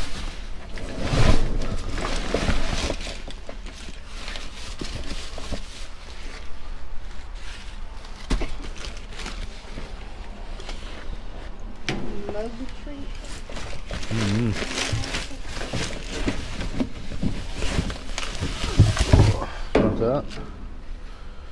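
Rummaging through discarded groceries in a dumpster: plastic bags crinkling and cardboard boxes shifting, with occasional knocks.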